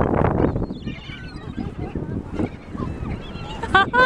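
A flock of gulls calling, with many short squawks scattered through and a louder drawn-out call starting near the end, over a steady low rumble.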